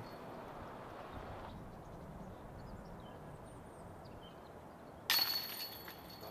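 A disc golf putt hitting the metal chains of a basket about five seconds in: a sudden loud jingle of chains with a short ringing tail, the putt going in for par. Before it, only faint outdoor ambience.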